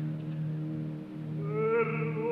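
Opera orchestra holding a low sustained chord. About a second and a half in, a tenor voice slides up onto a high held note with a wide vibrato, and the sound grows louder.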